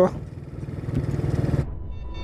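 Rusi DL150 motorcycle's 150 cc engine running while riding, its pulsing exhaust beat growing a little louder about a second in, then cut off abruptly near the end as a low rumble begins.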